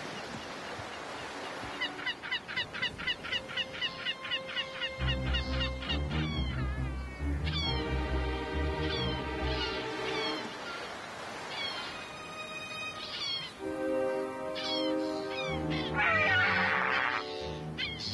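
Seagulls calling, a quick run of short calls a couple of seconds in and scattered calls after, over background music that comes in with sustained low notes about five seconds in.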